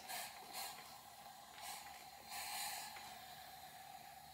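Hand trigger spray bottle misting water onto a dresser in three or four short hissing squirts, wetting dry pigment powders so the colours start to run.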